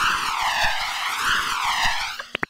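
Jet airliner flyby sound effect: a rushing jet-engine noise with a wavering, sweeping phasing quality, fading out near the end.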